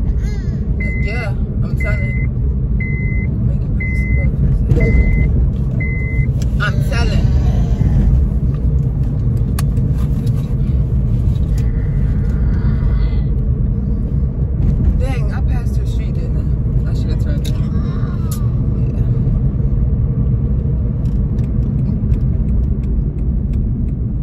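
Steady road and engine rumble inside a moving car's cabin. In the first six seconds, six short high electronic beeps sound about one a second.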